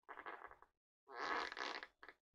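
Packaging rustling as it is handled: two short bursts, the second a little longer and louder.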